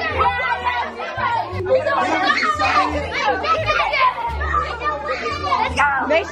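Many children's voices chattering and calling out over party music with a steady bass line.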